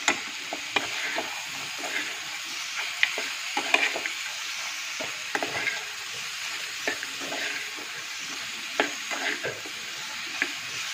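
Pork and sliced onions sizzling in an aluminium pan while being stirred, with a metal spoon giving irregular scrapes and knocks against the pan.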